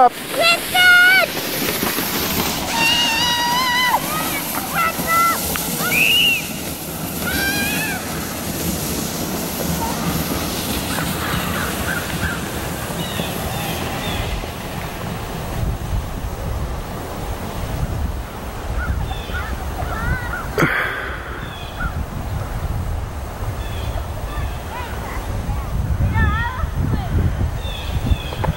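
Children's high-pitched shouts and squeals over the first several seconds as a sled sets off downhill. After that comes a steady rushing rumble of wind on the microphone, with one sharp click about twenty seconds in.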